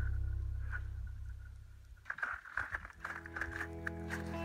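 Soft background music fading out, then a run of irregular crunching and crackling as a dog walks over thin shore ice and frozen grass.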